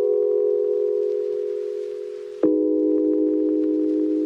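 Background music: sustained, bell-like electronic chords, a new chord struck about two and a half seconds in, each one fading slowly.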